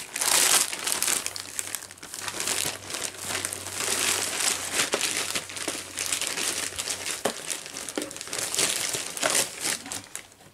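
Plastic parcel packaging crinkling and rustling as it is handled and pulled open, loudest in the first second.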